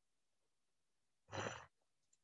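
Near silence, then a short breath about a second and a half in.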